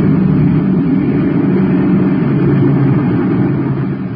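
Radio-drama sound effect of a spaceship's rocket engines: a loud, steady rumble that starts to fade near the end.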